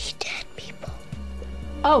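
A short whispered line of film dialogue played back over a steady music bed. Near the end a woman exclaims "Oh".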